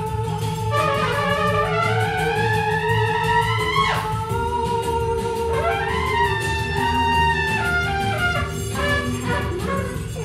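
Mutantrumpet, a hybrid electro-acoustic trumpet, played through electronic effects over a low, pulsing electronic backing. Long sliding tones climb slowly, drop sharply about four seconds in, then move in short stepped phrases.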